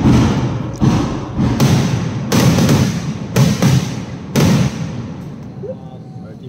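Aerial firework shells exploding in quick succession, about seven loud booms in under four seconds, each trailing off in a long echoing rumble. The booms die away about five seconds in.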